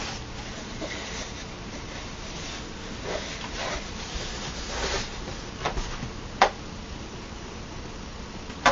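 A long cardboard box being opened and handled: cardboard rubbing and scraping, with two sharp knocks a little past halfway.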